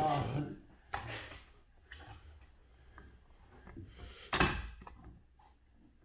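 Land Rover Defender roof cross bar foot being slid and handled along the roof rail, with a sharp clunk about four seconds in as the spring-loaded locking plunger is worked into its lock slot.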